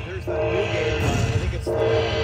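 Aristocrat Dragon Cash slot machine playing its win celebration tune, steady held notes, while the bonus win total counts up.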